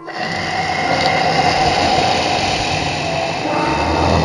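Horror sound effect: a loud, dense noise with a held mid-pitched tone, starting suddenly and then continuing steadily.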